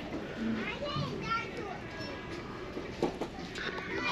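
Faint background voices of other shoppers in a store, including a child's higher-pitched voice, with no loud nearby sound.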